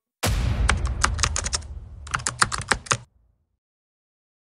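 Typing sound effect: a sudden low rumble, then two quick runs of key clicks of about a second each, with a short gap between them. It stops short a little after three seconds.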